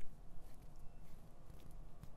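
Faint, soft rustling of hands sliding and pressing over facial skin during a face massage, a few brief strokes over a steady low room hum.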